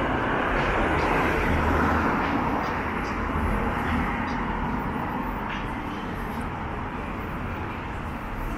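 A car passing close by on a city street: tyre and engine noise swelling over the first two seconds, then slowly fading.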